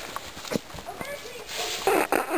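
Footsteps over a forest floor strewn with loose boards, with spruce branches brushing past and a few short knocks; a louder rustle near the end.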